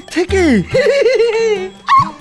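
Wordless voice sounds with steep downward-swooping pitch glides over steady background music, and a sharp click near the end.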